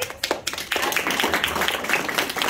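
A group of children clapping: a few separate claps at first, filling out into steady applause about half a second in.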